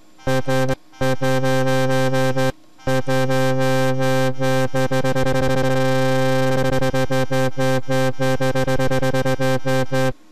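Synthesized wobble bass from FL Studio's 3xOSC: one low note pulsing fast and evenly as an LFO sweeps the filter cutoff. It cuts out twice in the first three seconds, then runs on, the pulsing quickening through the middle and easing again.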